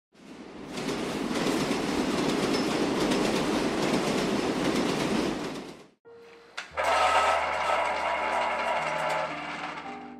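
Subway train running: a steady noise with fine clatter that fades in over the first second and cuts off abruptly about six seconds in. Music with held chords over a low bass note follows.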